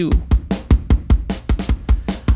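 Soloed drum-and-bass beat from a Groove Agent drum preset, playing through oeksound Bloom with its low band boosted while the band's frequency is swept. Heavy kick thumps run under fast, closely spaced hi-hat and snare hits.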